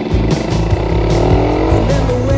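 Motorcycle engine running and rising in pitch as it accelerates, with steady background music over it.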